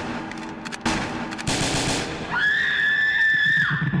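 Gunshot sound effects in a rap track's intro: several noisy bangs in the first two seconds, followed by a high steady tone held for about a second and a half.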